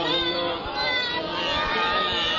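A voice chanting a drawn-out devotional Arabic melody, its pitch wavering and gliding up and down.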